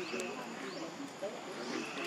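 Indistinct background voices chattering, with a bird calling over them about every second and a half: a quick rising note followed by a short held whistle.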